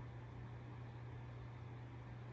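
Quiet room tone: a steady low hum under a faint even hiss, with no other event.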